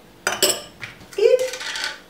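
A metal spoon clinking a few times against a ceramic bowl, in a quick cluster shortly after the start.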